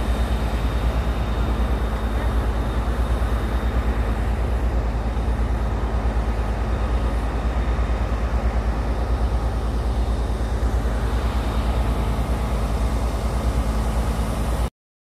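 Wind buffeting a phone microphone: a loud, continuous low rumble that flutters rapidly.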